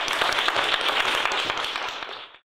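Audience applauding: many hands clapping together, easing off slightly near the end.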